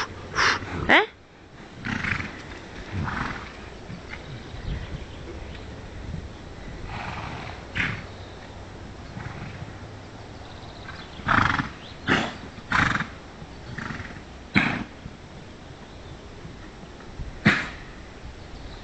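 Horses blowing and snorting hard after running, heard as short loud bursts of breath: a few at the start, a cluster about eleven to fifteen seconds in, and one more near the end.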